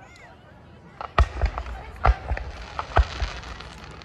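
Aerial fireworks shells bursting. After about a second of faint voices, a rapid run of bangs begins: three loud reports roughly a second apart, with smaller pops and crackles between them.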